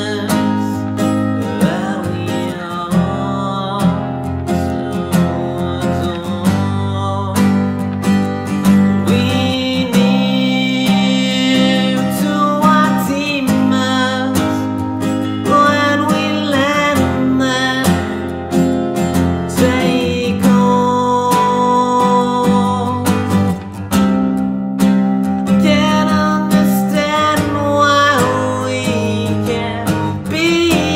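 Song played on acoustic guitar, with plucked and strummed notes sounding throughout.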